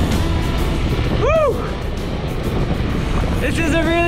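Scooter riding noise, a steady low rumble of engine and wind, under background music. A short rising-and-falling vocal whoop comes about a second in, and voices or singing start near the end.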